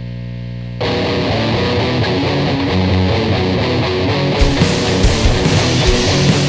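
Opening of a punk rock song played by a rock band with guitar: a steady held chord, then the full band comes in louder just under a second in. From about four and a half seconds in, evenly spaced beat hits get stronger and brighter.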